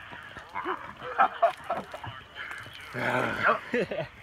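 Men's voices yelling and hooting in short, honk-like bursts, with a louder, longer yell about three seconds in.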